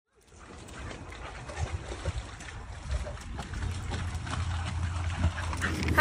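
Outdoor background noise fading in from silence and growing louder: a low rumble with scattered faint rustles and knocks.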